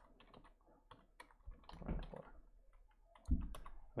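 Computer keyboard typing: irregular, fairly quiet keystrokes.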